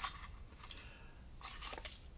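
Faint rustling and scraping of stiff paper cards being slid out of a small wooden box, with a few slightly louder scrapes near the end.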